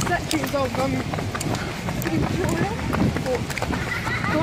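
Indistinct voices of people talking, with a runner's footsteps on a gravel path giving short irregular thuds.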